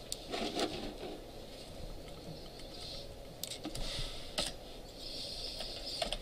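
A few sparse computer keyboard and mouse clicks as code is selected and deleted in a text editor, over faint steady room noise.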